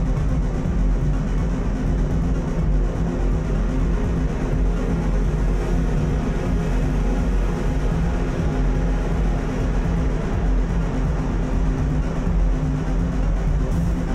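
Live electronic noise music: a dense, steady wall of noise over a heavy sustained bass drone, with no clear beat.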